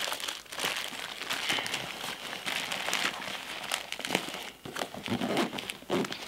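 Plastic packaging and a nylon sling pack's pouch rustling and crinkling as first-aid supplies are handled and stuffed back in, with scattered small clicks and taps.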